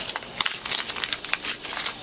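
Paper envelope being torn open by hand: a quick run of crackling rips and paper crinkles.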